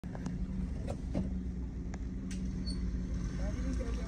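Car engine running steadily, heard from inside the vehicle, with scattered sharp clicks and a few short calls near the end.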